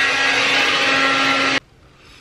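Hair dryer blowing steadily, a rush of air over a constant motor hum, switched off abruptly about one and a half seconds in.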